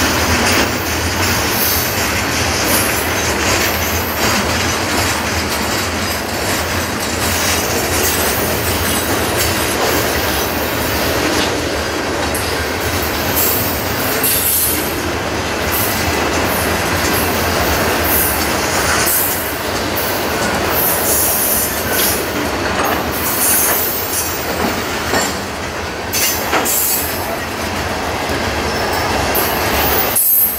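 Freight cars rolling past close by: a steady rumble and clatter of steel wheels on the rails, with high-pitched wheel squeal at times in the second half.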